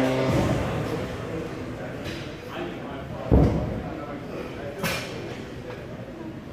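Background music cutting out just after the start, then gym noise with a heavy, low thud about three seconds in and a sharp click a second and a half later.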